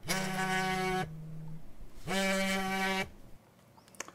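Mobile phone ringing: two steady electronic tones, each about a second long, with about a second between them.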